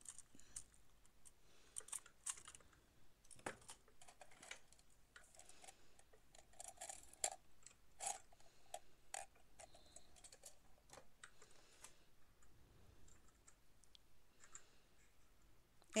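Faint, scattered clicks and light rattles of small modelling tools being sorted through in a cup.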